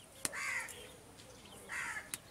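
A crow cawing twice, once about half a second in and again near the end, with a sharp click just before the first caw.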